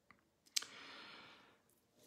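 A faint mouth click, then a soft intake of breath lasting about a second, taken by a man pausing between sentences of his speech.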